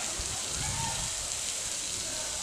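Steady hiss of outdoor ambient noise, with a few faint short tones about halfway through.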